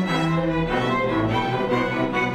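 String orchestra music, violins over cellos, with sustained bowed notes; the low bass line steps down to a lower note about two-thirds of a second in.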